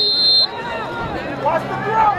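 A short, loud, steady blast on a referee's whistle in the first half second, then spectators' voices chattering.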